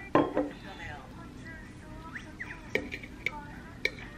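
Tableware being handled: a sharp knock just after the start, then three short clinks of a metal fork against a ceramic plate in the second half.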